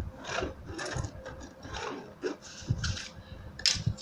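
A pen drawn repeatedly along a ruler on PVC leather bag fabric, marking a straight line: a series of short scratching strokes.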